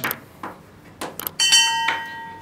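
A few sharp clicks, then a short bell-like chime about one and a half seconds in: the sound effect of a subscribe-button animation.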